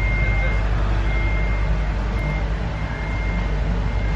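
Steady low machine hum from outdoor machinery, with a faint high beep that comes and goes in short pulses.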